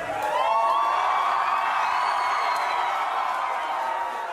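A crowd cheering and screaming as the song's beat and vocals drop away at the end of the remix. It is a dense mass of high voices that swells in the first second or so, then slowly fades.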